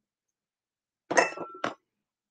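Silence, then about a second in a sharp clink with a short ringing tone, followed by a second light knock: small hard ornaments clinking together as they are handled.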